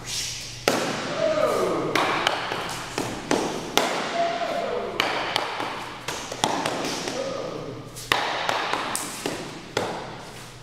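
Rubber training sticks smacking against each other and against a sparring helmet in quick, irregular strikes, about fifteen in all, each with a short ringing tail.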